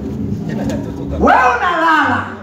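A man's voice over a microphone and PA: a single drawn-out vocal sound, starting just past halfway, that glides steeply up in pitch and then falls back.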